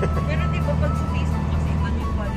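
Steady low engine and road rumble heard from inside a moving vehicle's cabin, with music with singing playing over it.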